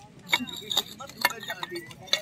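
A small elephant figurine knocking and clinking against the inside of a porcelain vase as fingers try to work it out through the neck: a few short, irregular taps.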